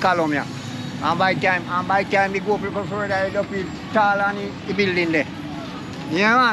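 A man talking in Jamaican Patois, in short phrases with brief gaps, over a steady low hum.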